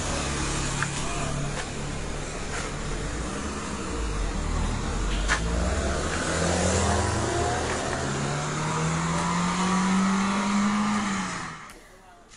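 Car engine revved hard as the car pulls away and speeds off, the engine note climbing in several rising sweeps and then fading out near the end.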